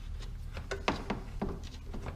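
Several light, irregular clicks and taps of a hand tool and fingers working a screw loose in the plastic headlight trim, over a low steady hum.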